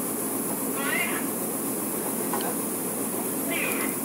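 Steady drone of a ship's deck machinery, with two short high squeals, one about a second in and one near the end.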